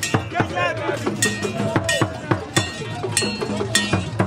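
Hand percussion struck in a steady rhythm of about three strokes a second, with a ringing metal tone like a bell, under the calls of a crowd of voices.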